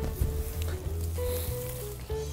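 Background music: a simple melody of held notes stepping between pitches over a steady bass line.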